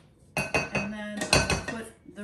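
Silicone spatula scraping and knocking against a stainless steel stand-mixer bowl while scooping whipped aquafaba. There are a few knocks, and the steel bowl rings after them.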